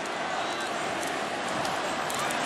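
Steady noise of a large stadium crowd.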